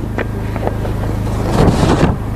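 Wind buffeting a lectern microphone: a steady low rumble, with a stronger gust about one and a half seconds in.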